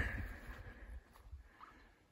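Faint outdoor quiet: a low rumble on the microphone that fades away over the first second, then near silence.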